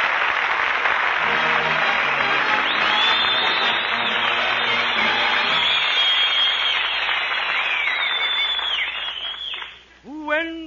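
A studio audience applauding a live 1940s radio broadcast, with the band playing a few low sustained notes underneath and high whistling over it. The applause dies away just before the end.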